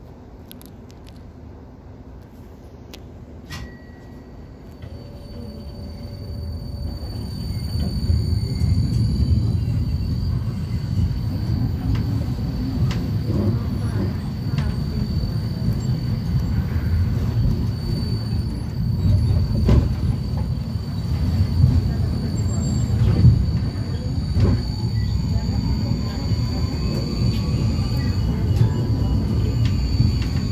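Inside a Vienna tram as it pulls away and runs along the track: a low rumble of wheels on rails swells from quiet over the first several seconds as it picks up speed, then runs steadily. A faint, steady high whine sits above it.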